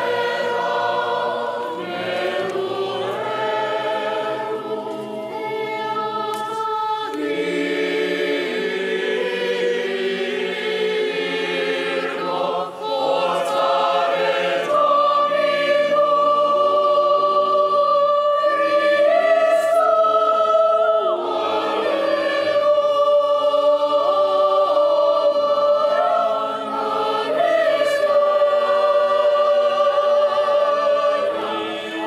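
A church choir of children and adult voices singing together, with long held notes in the second half.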